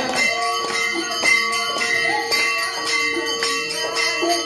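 Hanging brass temple bell rung repeatedly, its strikes running together into a continuous ringing tone.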